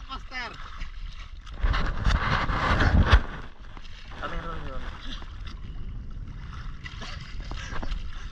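Seawater splashing and sloshing around a camera held at the water's surface, loudest for about a second and a half starting about two seconds in, with short bursts of voices.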